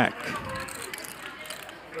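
Faint, rapid, ratchet-like clicking and crackling of small hard plastic objects under low table chatter.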